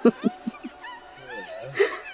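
Snickering laughter, about four quick pulses in the first second, followed by a high, wavering voice.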